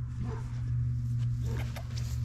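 Beagle puppy making a few short, soft whimpers while nosing into a ring toy, over a steady low hum.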